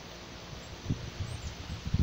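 Handling noise from a handheld phone being moved: irregular low bumps and rubbing from about half a second in, over a quiet outdoor background of light wind and rustling.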